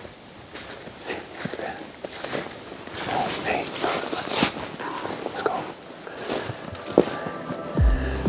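Footsteps through snow and dry leaf litter, with a few low, indistinct voices. Music with a low, regular beat comes in near the end.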